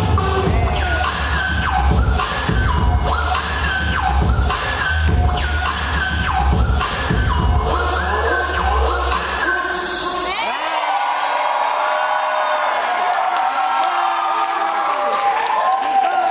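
Hip-hop dance track with a heavy bass beat and a repeating melodic figure, cutting off about ten seconds in; then an audience cheers and screams.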